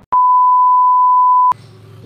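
A single electronic beep: one steady pure tone, about a second and a half long, that cuts in and off abruptly.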